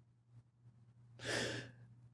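A man's single short, soft breath, close to a headset microphone, a little past halfway through, over a faint steady low hum.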